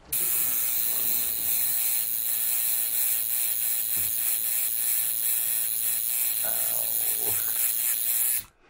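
Electric tattoo machine buzzing steadily, a constant pitched mechanical drone that starts abruptly.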